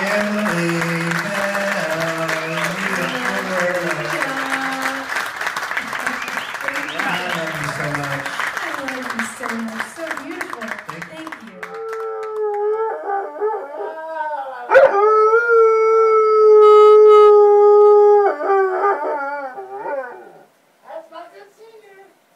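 Audience applause with voices mixed in for the first half. Then a dog howls in long, steady, high notes, the loudest sound here, from about twelve seconds in until shortly before the end, broken by a sharp click near fifteen seconds.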